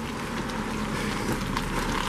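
Steady, even outdoor noise while walking along a snow-covered sidewalk, with no distinct footstep or other events standing out.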